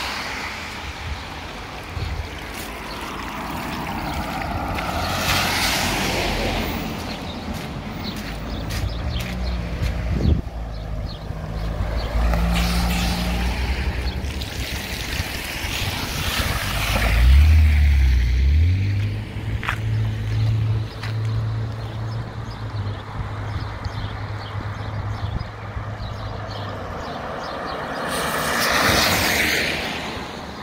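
Several cars passing one after another on a flooded road, their tyres hissing through the standing water, the nearest passing about halfway through. A low steady hum runs under the middle stretch.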